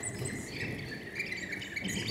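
Faint birdsong: many short, high chirps over a low background hiss.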